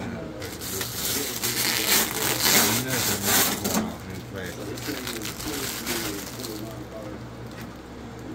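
Clear plastic wrap crinkling as it is pulled off a radio-controlled truck's body. The crinkling is loudest from about half a second to four seconds in, then fades to lighter handling noise.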